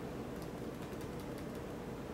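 A few faint, light clicks in the first half, over a steady low background hum.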